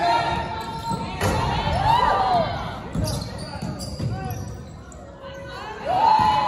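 Basketball game play on an indoor court: the ball bouncing and sneakers squeaking on the wooden floor, with voices in the background.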